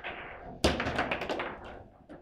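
Table football play: one sharp, loud hit of the ball by a plastic rod figure, followed by a quick run of clacks and rattles from the ball, figures and rods for about a second.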